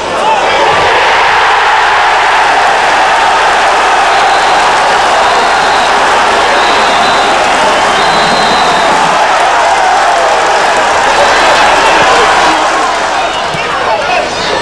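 Football crowd cheering a goal: a loud, sustained roar that swells about half a second in, holds, and dies away near the end.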